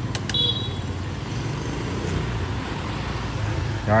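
A steady low hum of motor vehicle noise, with a couple of sharp clicks and a brief high-pitched beep about half a second in.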